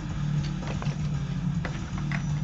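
A cassette inlay card and its plastic case being handled: a few light clicks and paper rustles over a steady low hum.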